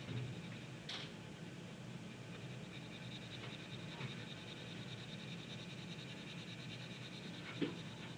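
Faint, soft rubbing of a paper blending stump smearing graphite across drawing paper, with a small tick about a second in and another near the end.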